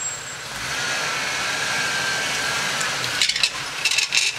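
Jeep Wrangler YJ crawling over rocks at low speed, its engine working under load, with a steady scraping as the leaf springs drag on rock. A few sharp knocks near the end.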